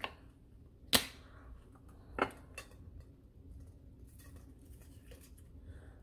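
Containers handled on a table: a sharp click about a second in, a smaller click a little after two seconds, then a few faint taps.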